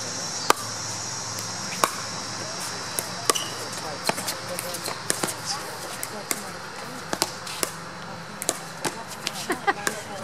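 Pickleball paddles hitting a plastic ball in a doubles rally, a sharp pop with each shot, about one every second or so at uneven intervals.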